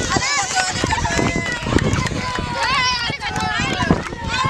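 A crowd of children singing and shouting together, many high voices overlapping, some notes held long, with scattered sharp knocks through it.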